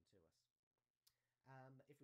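A man's narrating voice, trailing off at the start and speaking again in the second half, with a single sharp click about a second in.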